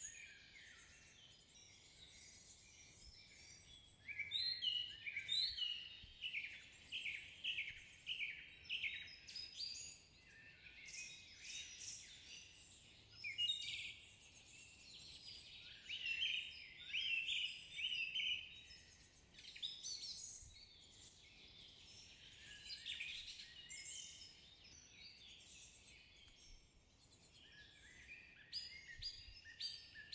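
Faint forest birdsong: birds chirping in quick runs of short, high, falling notes, in phrases separated by brief pauses.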